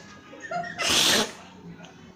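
A woman blowing one hard, short puff of breath across a tabletop to push a coin, about a second in, just after a brief vocal sound.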